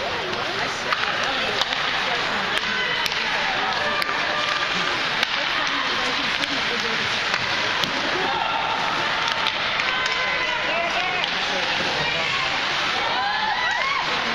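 Ice hockey game heard from the stands: a steady hum of spectator chatter with sharp clacks of sticks and puck on the ice and boards scattered throughout. Near the end, voices rise as the crowd calls out.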